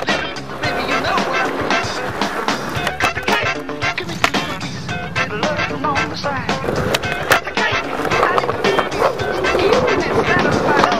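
A song with vocals plays over skateboard sounds: wheels rolling on concrete and sharp clacks of the board popping and landing, the loudest about four and seven seconds in.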